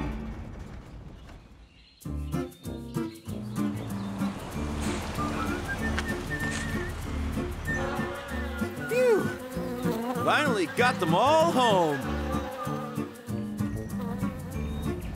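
Cartoon soundtrack: music fades out over the first two seconds, then background music with a repeating bass pattern starts, under a cartoon bee-buzzing effect. A few sliding tones that rise and fall come about nine to twelve seconds in.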